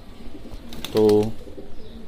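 Domestic pigeons cooing in their loft, quieter than a short spoken word about a second in.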